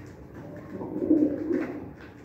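Domestic pigeon cooing: one low, warbling coo that starts about half a second in and fades just before the end.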